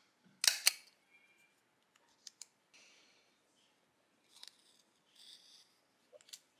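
Handheld metal single-hole paper punch snapping through a paper label: two sharp clicks close together about half a second in. Then a few faint ticks and soft paper rustling as the tag is handled.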